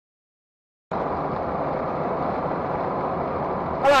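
Silence for about the first second, then steady road and engine noise inside the cabin of a moving car. A loud voice starts speaking near the end.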